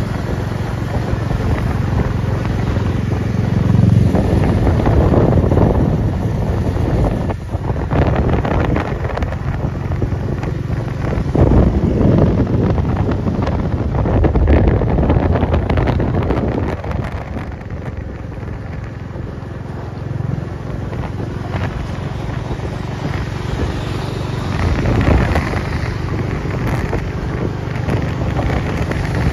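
Royal Enfield motorcycle riding at speed: the engine running under heavy wind buffeting on the microphone, swelling and easing in gusts.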